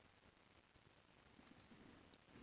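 Near silence, broken by two faint clicks close together about one and a half seconds in.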